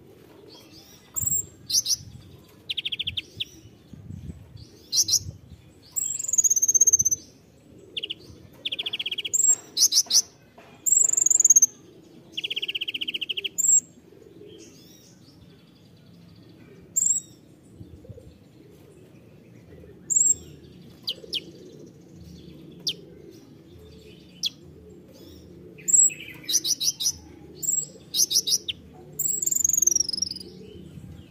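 Male kolibri ninja (van Hasselt's sunbird) singing: sharp high chirps, quick falling whistles and short buzzy trills in clusters. The clusters are busy in the first half, thin to scattered chirps in the middle, and pick up again near the end.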